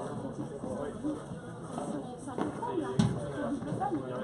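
Padel ball struck during a rally: two sharp knocks, about two and a half and three seconds in, the second the louder, over the voices of spectators chatting.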